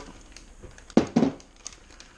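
A bowl of beans set down on a wooden counter, a sharp knock about a second in, with a few faint clicks and plastic rustles of kitchen handling.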